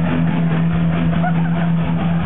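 Loud heavy rock music over a club sound system: a low distorted guitar note held steady under a beat, with crowd voices mixed in.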